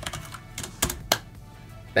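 Computer keyboard keystrokes: a few sharp clicks about a second in as a chat command is typed and sent, over faint background music.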